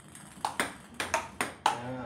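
Table tennis ball clicking sharply off paddle and table in a quick run of pings, about four a second, starting about half a second in.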